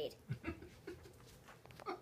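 A young girl's short, breathy giggles, faint and broken up, with light clicks and rustles as she moves away from the microphone.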